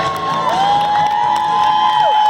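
Stadium crowd cheering, with several long, high cries held for a second or more and overlapping.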